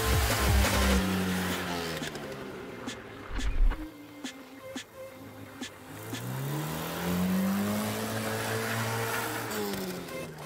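Classic Lada sedan's engine revving up and down as the car drifts on snow, its pitch falling in the first second and then climbing and dropping again in a long sweep near the end. A single heavy thump about three and a half seconds in is the loudest moment.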